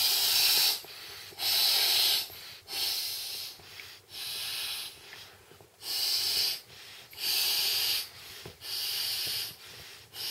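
Breaths blown by mouth into a vinyl air mat's valve: about seven rushes of air, each under a second, in an even rhythm, with quieter breaths drawn in between.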